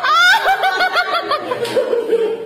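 A person laughing: a rising cry, then a quick run of short chuckles, about six a second, over a steady faint hum.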